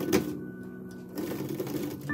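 Bicycle roller chain clinking and rattling against a brass sprocket as it is fitted by hand: one sharp clink just after the start, then a rattle through the second half. Soft background music with held tones plays underneath.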